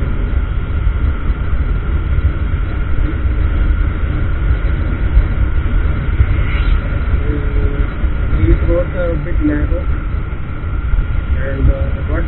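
Wind buffeting the microphone of a moving Honda Grazia 125 scooter, with its small single-cylinder engine running steadily at cruising speed. A steady thin whine sits above the rumble.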